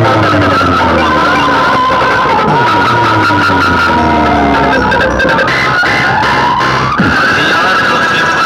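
Loud DJ dance music played through a newly built 6D DJ box speaker stack during a sound test. Repeated falling pitch sweeps run over a steady deep bass, with a sharp glide near the end.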